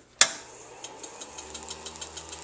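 A switch clicks and a Van de Graaff generator's motor starts running with a steady hum, with light, irregular ticks over it.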